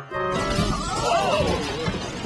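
Cartoon crash sound effect of a collision pile-up: a sudden loud crash about a third of a second in, followed by continued clattering, with a wavering pitched sound over it and music underneath.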